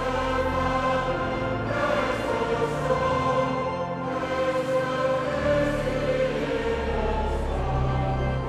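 A large congregation singing a Dutch hymn together with instrumental accompaniment, the lines "prijst de Vader, prijst de Zoon, prijst de Geest, die in ons woont, prijst de Koning der heerlijkheid" following one another in phrases of a few seconds.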